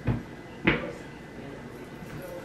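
Two dull footsteps in sneakers on a wooden floor, about two-thirds of a second apart.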